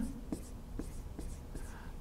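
Dry-erase marker writing digits on a whiteboard: a string of faint, short strokes and ticks.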